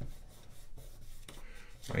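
Fingers rubbing and pressing along a fold in a sheet of origami paper on a wooden tabletop, creasing it: a faint rubbing with a couple of light taps in the second half.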